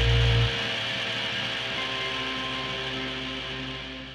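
The final held chord of a Tuareg desert-rock track for electric guitars, bass and drums: the low end cuts off about half a second in, leaving a fading wash of amplifier hum and hiss with a few faint ringing notes that die away to silence.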